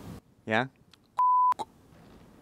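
A short, steady 1 kHz bleep tone lasting about a third of a second, set in near-total silence: an edit-inserted censor bleep blanking out a word.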